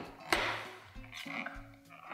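Hand-held manual can opener biting into and cranking around the steel lid of a can of pumpkin puree: a short scrape, then a low grinding buzz in the second half.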